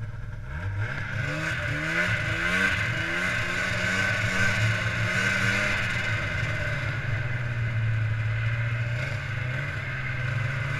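Snowmobile engine accelerating, its pitch climbing in several rising sweeps over the first few seconds, then running at a steady speed.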